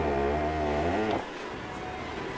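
A low, drawn-out growl-like voice, wavering slightly in pitch, held for just over a second and then breaking off.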